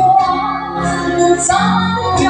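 A woman singing into a handheld microphone, amplified in a large hall, holding long sustained notes that glide between pitches.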